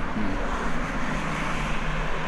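Steady rushing noise of a passing motor vehicle, swelling slightly a little after a second in.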